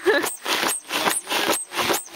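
Foot air pump worked in a steady rhythm, about two strokes a second, each stroke a rush of air. It is forcing air through a hose into a samovar's chimney to fan the fire in its firebox.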